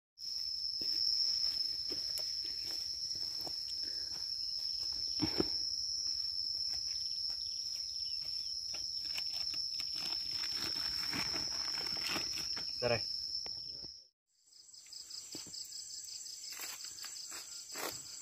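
A steady, high-pitched insect drone with scattered light ticks and rustles; about fourteen seconds in it cuts off, and after a moment of silence a higher, fast-pulsing trill of night insects takes over.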